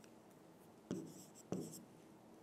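Chalk writing on a blackboard, faint, with two short strokes: one about a second in and another half a second later.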